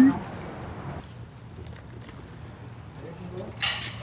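Quiet city street background at night with a steady low hum, a few faint distant voices, and a short hiss near the end.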